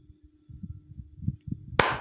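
A short pause in a woman's speech: faint, irregular low thumps and a steady low hum under the recording, then a hissy 's' sound near the end as she starts speaking again.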